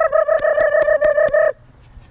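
A person's high-pitched, rapidly pulsed trill, about eight pulses a second at one steady pitch: a verbal prompt made to call a dog in and refocus it. It lasts about a second and a half and stops abruptly.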